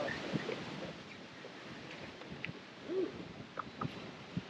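Wind noise on the microphone over the open water at the boat, with a short low hoot-like sound about three seconds in and a few sharp clicks near the end.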